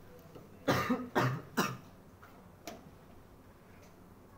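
A person coughing three times in quick succession, followed about a second later by a single sharp click.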